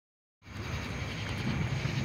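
Low, steady rumble of an approaching Norfolk Southern diesel freight locomotive, starting about half a second in.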